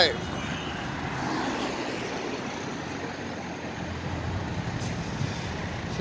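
Steady road traffic noise from cars driving along a busy multi-lane city avenue, an even hum with no single sharp event.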